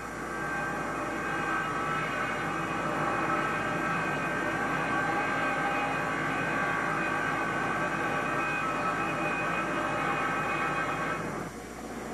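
Marble-working machinery running steadily: a continuous drone with a whine of several held tones that falls away near the end.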